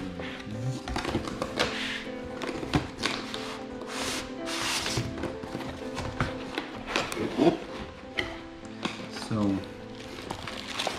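Background music with sustained tones, over the handling of cardboard and foam packaging: rustling, scraping and light knocks as a laptop's shipping box is opened and its inner packing lifted out.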